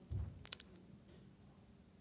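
Faint mouth noises close to a microphone: a soft low sound and a lip click within the first half-second, then near-silent room tone.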